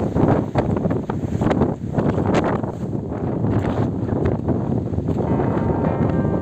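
Strong wind buffeting the microphone over the rush of rough sea surf breaking on the shore, in uneven surges. Music begins faintly near the end.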